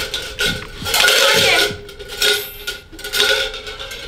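Metal spoons clattering and clinking inside tin cans as they are shaken and drawn out to draw lots.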